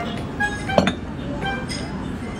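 Ceramic bowls and dishes clinking against each other and the wooden table as more bowls of noodles are set down, the sharpest knock a little under a second in. Background music plays underneath.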